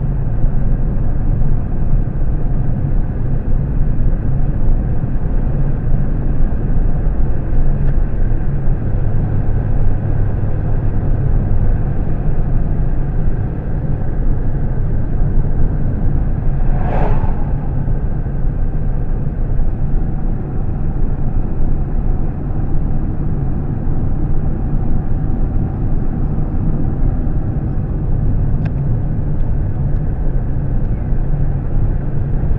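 Steady road and engine noise inside a moving car's cabin, with a brief whoosh about halfway through as an oncoming pickup truck passes.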